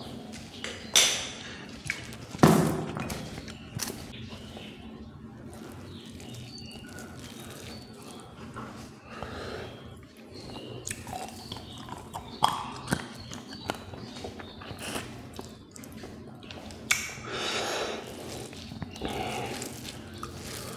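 Close-miked eating sounds of a man eating pork and rice with his hand: chewing and wet mouth clicks. A sharp knock about a second in and a louder knock about two and a half seconds in, the second when a glass mug is set down on the table.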